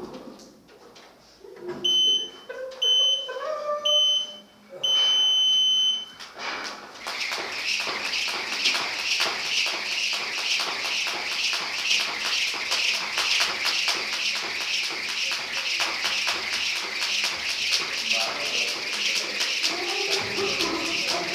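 Electronic workout timer counting down with three short beeps and one long beep, then a jump rope whipping round fast in a steady rhythm during double-unders.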